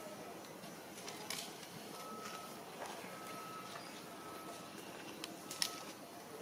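Outdoor ambience: a steady hiss with a short, steady, high note repeated four times, each about half a second long, and a few sharp clicks, the loudest near the end.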